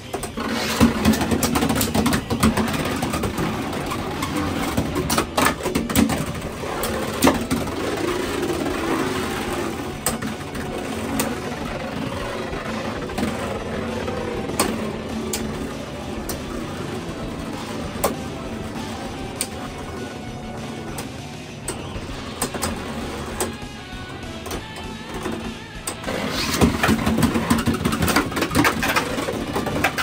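Beyblade X spinning tops whirring and grinding on a plastic stadium floor, with frequent sharp clacks as they strike each other. The noise is loudest in the first few seconds and again near the end.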